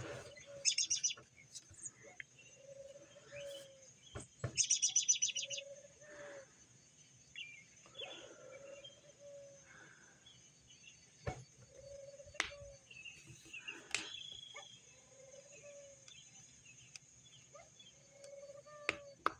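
Mourning doves cooing: soft, low coos repeated every couple of seconds. Another small bird's rapid high trill sounds twice in the first six seconds, and a few sharp clicks come later.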